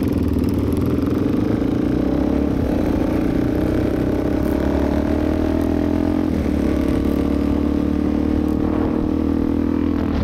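Suzuki DR-Z400 supermoto's single-cylinder engine with a loud exhaust, pulling away under steady acceleration, its pitch rising slowly, then dropping once about six seconds in at a gear change before holding steady at cruising speed. Wind rumbles on the microphone underneath.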